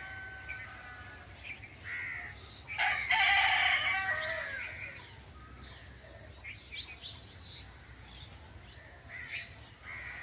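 A rooster crows once, about three seconds in, the loudest sound here, over scattered small-bird chirps and a steady high insect buzz.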